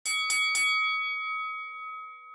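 Boxing ring bell struck three times in quick succession, then ringing on and slowly fading, signalling the start of a round.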